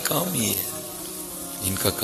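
A steady low buzzing hum fills a pause in a man's speech. His voice trails off in the first half second, and a brief vocal sound comes near the end.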